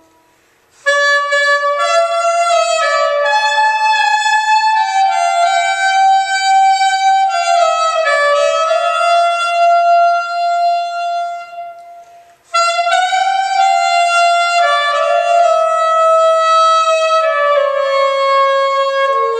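Solo soprano saxophone playing a slow, unaccompanied melody of long held notes, beginning about a second in, with a short break of about a second near the middle before the next phrase.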